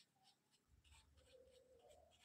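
Very faint strokes of a thin watercolour brush on paper: short, irregular scratchy brushing, barely above room tone.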